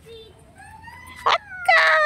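A Shih Tzu whining: a soft rising whine, a short sharp yip a little past halfway, then a loud, long whine that starts near the end and slides down in pitch.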